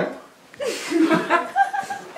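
People laughing and chuckling, mixed with a little talk; the laughter breaks out about half a second in after a brief lull.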